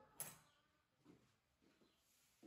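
A ceramic plate set down on a wooden tabletop: one short clack just after the start that dies away quickly, then near silence with a few faint ticks.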